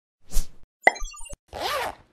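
Animated-logo sound effects: a soft pop, then a sharp click followed by a few short, tinkly high notes and a second click, then a brief swoosh with a gliding tone near the end.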